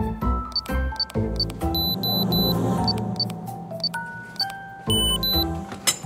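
Background music with held notes, over which short high beeps sound one after another at uneven intervals, as from buttons being pressed on a door code keypad.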